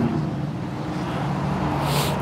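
Steady low hum of motor-vehicle traffic, with a short hiss near the end.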